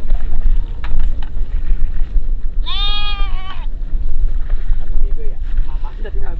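A sheep in a passing flock bleats once near the middle, a single call lasting about a second, over a steady low rumble.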